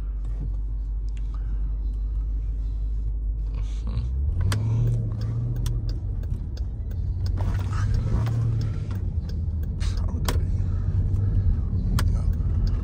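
Jeep Grand Cherokee SRT's V8 heard from inside the cabin, idling with a low steady hum, then pulling away about four seconds in with a stronger, slightly higher engine note as the car moves off.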